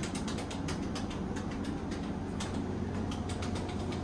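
Montgomery elevator car-panel pushbuttons being pressed over and over, a quick run of sharp clicks at about five or six a second that thins out in the last second or so, over a steady low hum.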